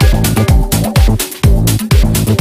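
Latin house music: a steady four-on-the-floor kick drum at about two beats a second under a bass line and bright percussion.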